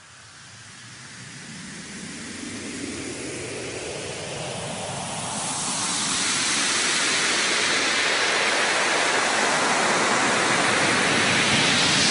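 Electronic white-noise riser fading in and growing louder and brighter as a filter sweeps open, then holding steady: the build-up intro of a house music track.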